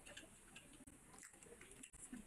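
Faint eating sounds: scattered soft, wet clicks of chewing and lip smacking, with light hiss underneath.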